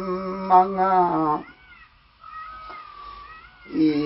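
Elderly man singing hakpare samlo, the Limbu traditional sung verse, holding one long steady note that ends about a second and a half in and starting the next held line near the end. In the quieter gap between, faint high gliding cries are heard.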